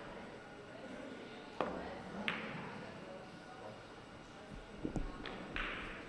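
Billiard cue tip striking the ball with a sharp click about a second and a half in, followed less than a second later by a second click as the ball makes contact on the table, then a few faint ball clicks near the end, with quiet hall ambience between.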